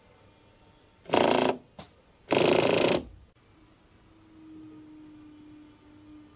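Two short, loud bursts of buzzing whirr from small DC motors, each under a second, about a second apart. After them comes a faint steady hum.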